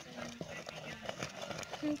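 Wooden stirring stick working thick tuwo masara (maize-flour paste) in a metal pot over a wood fire, knocking against the pot in irregular taps.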